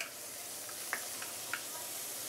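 Sliced ginger, galangal, garlic, shallot and coriander roots sizzling steadily in hot garlic oil in a nonstick wok, stirred with a wooden spatula that gives a few light scrapes and taps.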